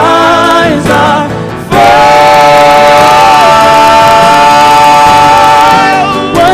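Live band music: a woman sings lead over acoustic guitar, keyboard and drums, and from about two seconds in she holds one long note that dips slightly in pitch midway.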